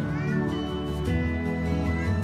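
Soft background music playing, with a brief high, wavering vocal cry in the first half-second.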